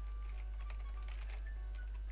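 Computer keyboard being typed on: a quick, irregular run of key clicks over a steady low hum.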